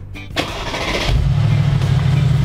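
Mercedes G-Class SUV's engine starting: a click, a brief crank, then it catches about a second in and runs with a loud, steady low drone.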